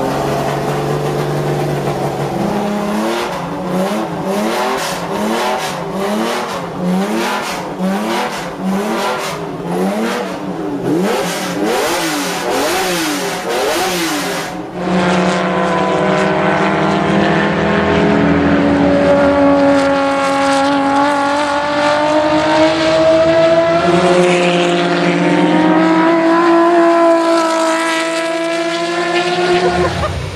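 BMW M1's 3.5-litre straight-six blipped up and down over and over, about once a second. Then, after a sudden cut, the M1 is out on a track, its engine pulling up through the revs with one upshift about three quarters of the way in.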